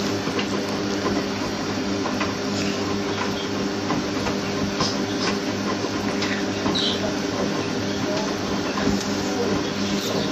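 Front-loading washing machine mid-wash, its drum tumbling a wet, sudsy load: a steady motor hum under the slosh of water and clothes, with occasional light clicks.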